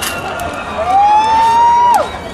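A high-pitched call from a person in the crowd close to the microphone: one loud note held for about a second, rising at the start and falling away sharply at the end, over steady crowd noise.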